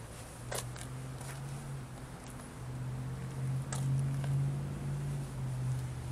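A steady low engine hum, growing louder about halfway through, with a few light clicks.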